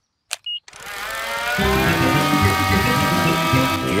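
Small electric propeller motor of a radio-controlled toy aeroplane (cartoon sound effect) starting up after a couple of clicks, its buzz rising in pitch and then running steadily.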